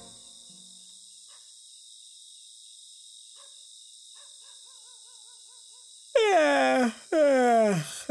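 Night ambience of crickets chirping steadily, with faint bird trills in the middle. About six seconds in, two loud calls break in, each falling steeply in pitch and lasting under a second.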